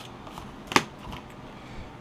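Foil-wrapped trading card packs being handled as they are lifted out of a cardboard hobby box and set on a desk. Faint rustling and light clicks run throughout, with one sharp tap a little under a second in.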